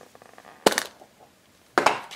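Pink plastic surprise-egg capsule being twisted open: one sharp plastic click about two-thirds of a second in, then a few quick plastic clicks near the end.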